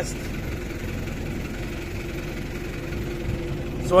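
A steady mechanical hum, like an engine running at a constant speed, holding one low tone over an even background noise.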